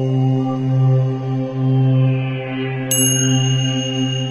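Closing logo music: a deep, steady chant-like drone, with a bright chime struck about three seconds in that rings on.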